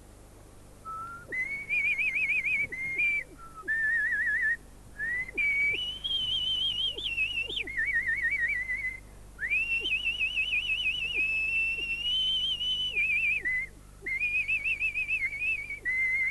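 A woman whistling a tune, two fingers held to her lips, on a single high note line with a strong, fast vibrato. The tune comes in phrases broken by short breaths, starting about a second in.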